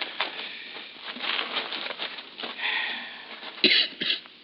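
A man coughing and clearing his throat in a 1950s radio-drama recording, with a louder burst near the end.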